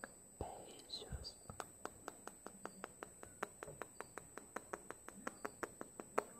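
Close-miked ASMR mouth sounds: a soft breathy whisper near the start, then a quick run of wet lip and tongue clicks, about five a second.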